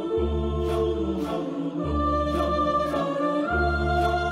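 Mixed a cappella choir singing sustained chords over deep bass notes, each held about a second and a half. A vocal-percussion beat with short sharp strikes about twice a second runs through it.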